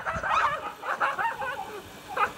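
Short, high-pitched yelps and squeals from a startled woman running away from rats.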